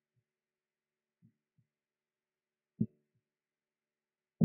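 A few short, soft low thumps in near quiet: a faint pair early, another faint pair just over a second in, and one much louder thump near the end.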